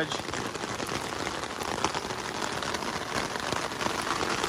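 Steady rain falling on an umbrella held overhead: an even hiss with scattered drop ticks.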